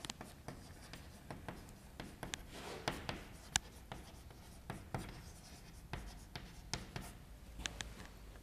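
Chalk writing on a chalkboard: irregular taps and short scratchy strokes as the words are written, the sharpest tap about three and a half seconds in.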